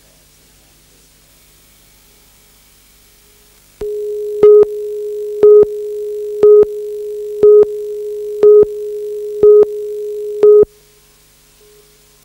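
Broadcast news tape countdown leader: after about four seconds of faint tape hiss, a steady low tone comes in with a louder, higher beep once a second, seven beeps in all, then cuts off suddenly.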